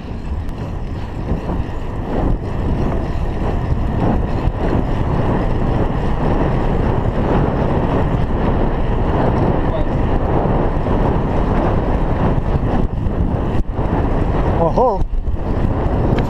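Wind rushing over a chest-mounted GoPro's microphone as the bicycle rolls along. It builds over the first few seconds as the bike picks up speed, then holds steady. A brief wavering voice cuts in near the end.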